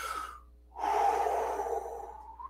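A man's audible breathing between phrases: a short breath, then after a brief pause a longer, louder breath lasting over a second.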